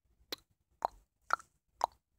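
Four short, sharp pops, evenly spaced about half a second apart.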